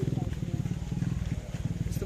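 Wind buffeting the microphone outdoors in rainy weather: a steady, choppy low rumble.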